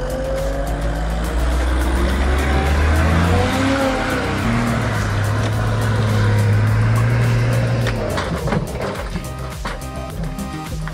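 Engine of a log-laden flatbed truck running hard, its pitch rising and falling, under background music. About eight seconds in comes a short clatter as the unsecured logs slide off the back of the bed.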